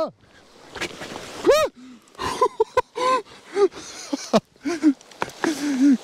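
A man's startled vocal cry about a second and a half in, followed by short broken exclamations as he almost slips going down a steep path of loose clay and stones. Brief scuffs of his shoes on the dry soil come between the cries.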